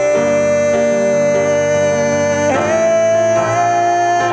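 Music: grand piano chords under a man's long held sung notes, with a slide up into a new held note about two and a half seconds in.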